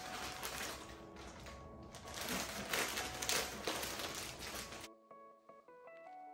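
Plastic mailer bag crinkling and rustling as it is handled and opened, over background music. The rustling stops abruptly near the end, leaving only the music.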